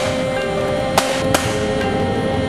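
Background music with held tones. Two sharp rifle shots crack over it about a second in, a third of a second apart.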